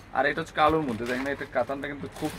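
Speech: a man's voice talking, with nothing else standing out.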